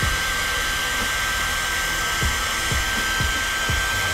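Handheld hair dryer running steadily, a rush of blown air with a thin, steady high whine.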